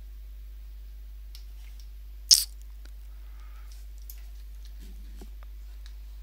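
Steady low electrical hum under the recording, with a few faint ticks and one short, sharp click about two seconds in.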